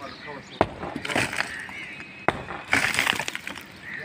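Hammer striking a concrete block wall during manual demolition: two sharp blows, with masonry breaking apart, and voices in the background.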